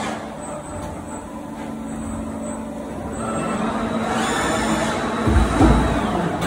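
Automated sheet-metal punching, shearing and bending line running: a steady mechanical hum with a constant low tone and faint high whines that come and go. It swells toward the end, with a heavier low rumble about five seconds in.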